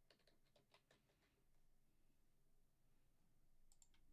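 Near silence, with very faint computer-keyboard typing for about the first second and a couple of faint clicks near the end.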